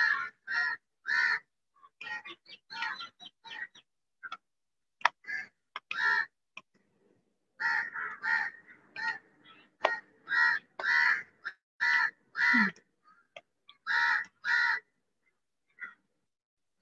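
Crows cawing over and over, the caws coming in quick runs of two to four with short pauses between.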